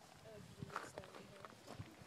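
Faint footsteps scuffing on a gravel road, a few soft steps about a second in and again near the end, under the quiet murmur of a small crowd's voices.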